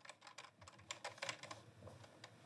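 Faint, irregular typing on a computer keyboard, a scatter of quick keystrokes.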